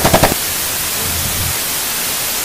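Steady hiss of TV-style white-noise static used as a video transition, opening with a fast stuttering rattle that stops about a third of a second in.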